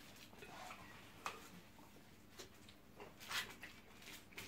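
Quiet room with a few faint, sharp clicks and a brief rustle near the end: small handling sounds of food being picked off aluminium foil and a plastic cup being lifted at the table.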